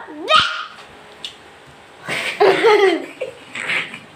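A small child's high-pitched voice in three short bursts of babbling and laughter, the longest about halfway through.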